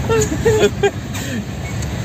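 A vehicle's engine and road noise as a steady low rumble heard from inside the moving cabin, with a few brief bits of voice.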